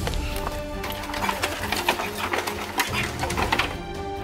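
Background music with a rapid, irregular rattle of toy blaster fire over it, most dense from about a second in until near the end.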